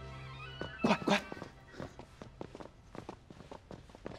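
Drama background music fades out, then two short loud cries about a second in, followed by quick footsteps on a hard floor.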